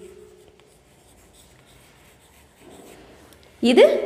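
Chalk faintly scratching and tapping on a chalkboard as words are written by hand.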